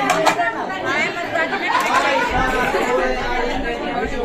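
Several people talking at once: overlapping chatter of a small group of voices.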